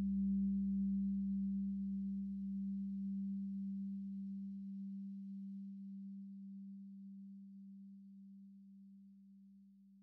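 One low, steady, pure tone that fades slowly away, with a deeper rumble under it that stops about halfway through.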